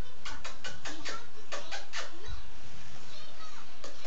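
A quick run of light, sharp clicks, about eight over the first two seconds and fainter after, with faint voices behind.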